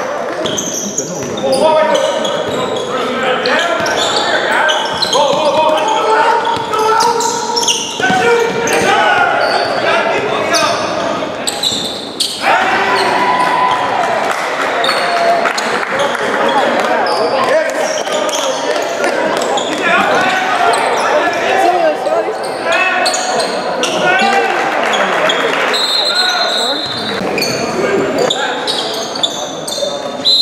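Basketball being dribbled on a hardwood court amid overlapping shouts and calls from players and benches, echoing in a large gym.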